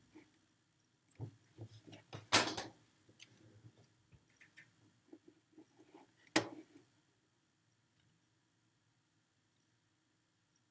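Faint desk and handling noises near the microphone: scattered small clicks and knocks, a louder rustling scrape about two and a half seconds in, and a sharp knock a little after six seconds, then quiet.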